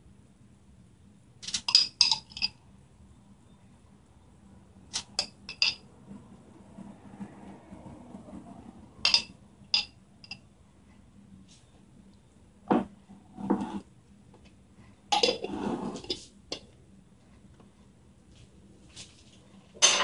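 A spoon clinking against a jar of tikka masala sauce as sauce is scooped out. The clinks are short and ringing and come in a few scattered groups, with a couple of duller knocks between them.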